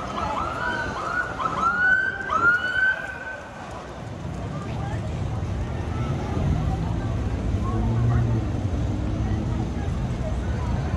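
Police car siren giving a quick run of short, rising whoops that stops about three seconds in. After that, the low rumble of passing traffic builds and swells toward the end.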